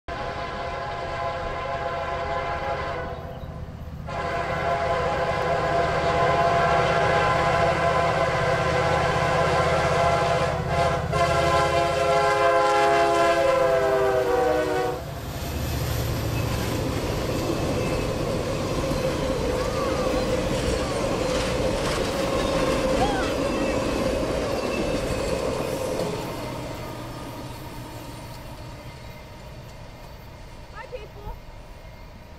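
Norfolk Southern diesel locomotive's air horn sounding in three blasts over the low engine rumble, its pitch dropping as the locomotive passes. The train's cars then roll by with steady wheel-on-rail noise that fades near the end.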